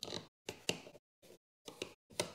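Screwdriver tip scraping and clicking against a GFCI outlet's mounting screws and metal strap as the outlet is held into an electrical box: four or five short bursts of scraping, each with a sharp click, separated by brief silences.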